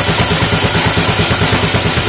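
Acoustic drum kit played fast: a rapid, even run of low drum strokes, about ten a second, under a continuous wash of cymbals.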